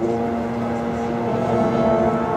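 Marching band brass coming in together on a loud chord, held steady.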